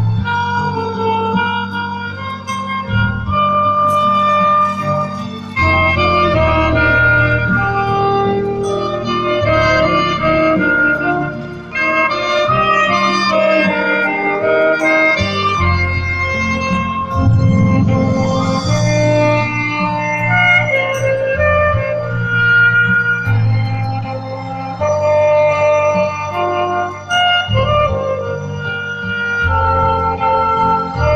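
Saxophone duet playing a slow melody over a recorded backing track with sustained bass and keyboard, heard through outdoor PA speakers.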